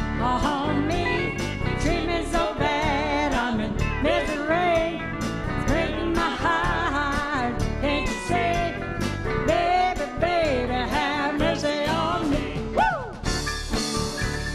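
Live country band playing: acoustic guitar, keyboard, bass and drums keep a steady beat under a lead melody line that bends and slides in pitch.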